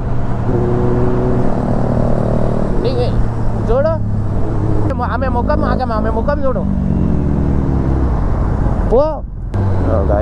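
Kawasaki ZX-10R inline-four engine running at low revs as the bike rides through slow city traffic, its pitch stepping slightly partway through.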